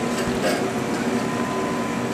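Steady hum of laboratory vacuum equipment and fans, with a thin high tone running under it and a light click about half a second in.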